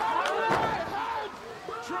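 Several excited voices shouting over one another, with a sharp knock at the start.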